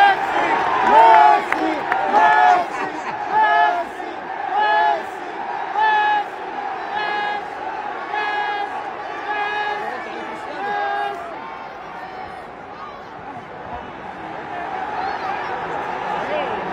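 Stadium crowd chanting "Messi" over and over in a steady rhythm, about once every second and a bit. The chant fades into general crowd noise for the last few seconds.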